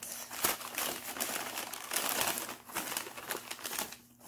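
Wrapping or packing material being crinkled and rustled by hand in a series of irregular crackles as an item is unwrapped and handled.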